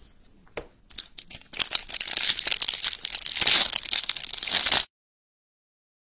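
A few light clicks of cards being handled, then, about a second and a half in, the foil wrapper of a 2021 Topps Series 1 jumbo pack being torn open and crinkled for about three seconds. The sound cuts off suddenly into dead silence.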